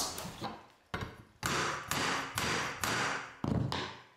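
Hammer knocking a laminate-flooring pull bar to draw the last strip's joints tight: about five knocks roughly half a second apart, each ringing briefly.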